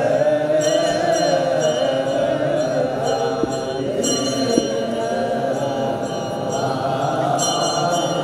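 Group of Orthodox Tewahdo clergy chanting liturgical zema together in long, wavering lines, with metal sistra jingling in short bursts about a second in, around the middle and near the end.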